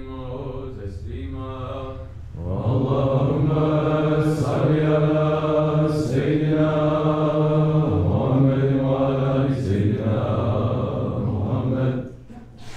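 Men's voices of a Sufi congregation chanting an Arabic devotional litany together in unison, in long held notes that step in pitch. The chant swells louder about two seconds in and stops abruptly at the end.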